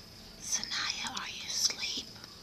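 A person whispering, starting about half a second in and going on for about a second and a half.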